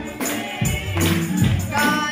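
Gospel music: a young girl singing into a microphone, with a steady beat of sharp percussive hits.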